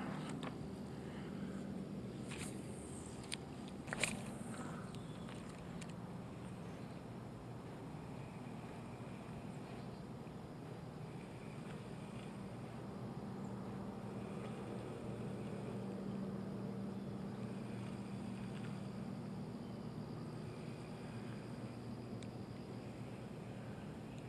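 Faint, steady low hum over quiet outdoor ambience. A few light, sharp clicks come in the first four seconds, from the spinning rod and reel being cast and wound in.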